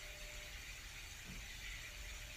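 Faint room tone: a steady low hum and hiss with no distinct event.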